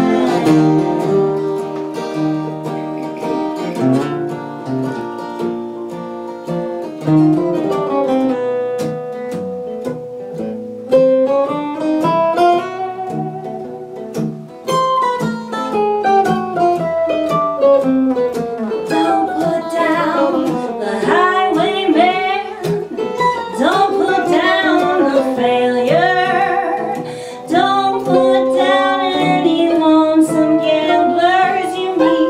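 Live acoustic Americana played on two acoustic guitars and a mandolin. Sung harmony is held over long notes through roughly the first half. From about halfway the music turns to a busy picked lead with quick, bending notes.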